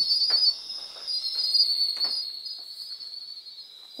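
Chorus of night-singing tropical forest insects such as katydids and crickets: a steady, high-pitched buzzing trill.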